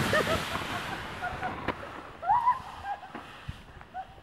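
Inner tube sliding fast down a packed snow run, a rushing noise with wind on the microphone that fades away over the first seconds. A few short high gliding cries come over it, the clearest about two and a half seconds in.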